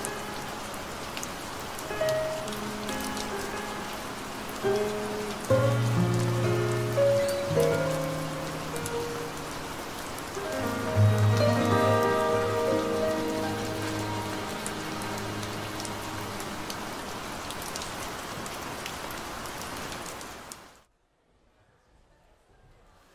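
Steady rain falling, layered with the slow, sustained notes and chords of a ballad's closing bars without vocals. Both fade out together to near silence about a second before the end.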